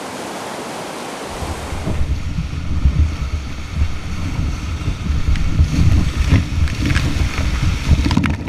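Whitewater rapids rushing with an even hiss. About two seconds in, this changes to the close, heavy rumble of water and wind buffeting a microphone on a raft running the rapids, with splashes of spray near the end.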